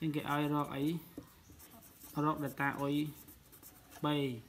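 Pen scratching on paper as a line of working is written out, under two short spoken phrases, one at the start and one in the middle.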